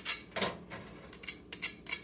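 A kitchen knife blade scraping and tapping on dry, oven-dried bread slices: several short, crisp scratches, the sound of bread dried out until it is very crispy.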